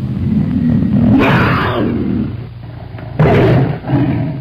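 A big cat's roar sound effect: a long, loud, low growl that swells into two louder roars, one about a second in and one near the end.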